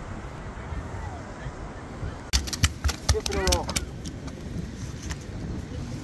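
Wind buffeting the microphone as a steady low rumble, broken about two and a half seconds in by a quick run of sharp clicks and knocks over roughly a second, with a short spoken word among them.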